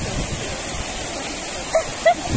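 Fountain water jets arching over a walkway, a steady hiss of spraying and splashing water, with a short vocal sound near the end.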